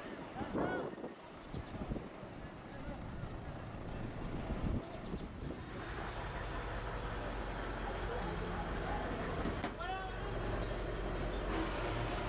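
Men's voices in the background, then a steady low machinery hum under a haze of noise from about halfway, with a few short high chirps near the end.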